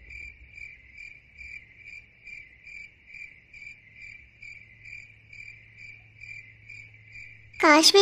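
Cricket chirping steadily at night, a single high note pulsing about twice a second, stopping shortly before the end.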